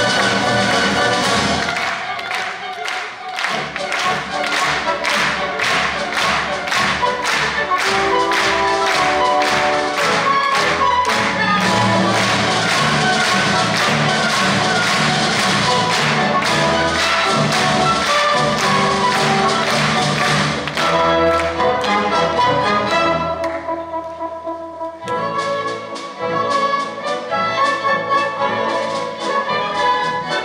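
Symphony orchestra playing, strings and brass over a steady pulse of percussive hits. The texture thins and drops in level for a couple of seconds about three quarters through, then the full orchestra comes back in.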